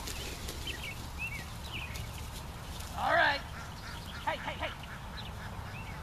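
A sheep bleats once, loud and wavering, about three seconds in, followed by a few shorter calls a second later. Small birds chirp faintly in the background over a steady low rumble.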